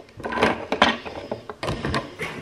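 Cardboard mailer box being opened by hand: rustling of cardboard and wrapping with a few sharp knocks and clicks, the sharpest about half a second in and near the end.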